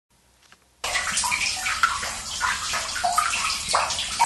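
Water running and splashing inside a hand-dug rock irrigation tunnel (mampu), starting suddenly about a second in.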